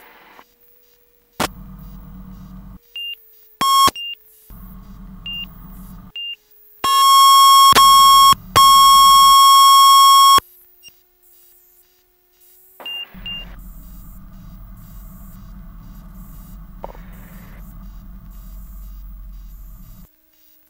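A loud, steady electronic warning tone from the light aircraft's cockpit avionics, heard through the headset intercom, lasting about three and a half seconds with a short break in the middle. Before it come a few short high beeps. Intercom hiss switches on and off throughout, under a faint engine note whose pitch sinks slowly.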